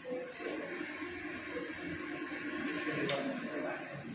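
Faint, indistinct speech over a steady hiss of room noise, with a single click about three seconds in.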